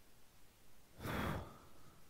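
A man sighing once, a breath out of about half a second about a second in, close to a headset microphone.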